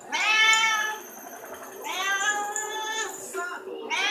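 Domestic cat meowing twice: two long, drawn-out meows, each rising in pitch at its start and then holding, the second starting about two seconds in.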